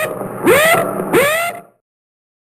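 A short sound effect of three swooping tones, each rising and then falling in pitch, stopping about two-thirds of the way through.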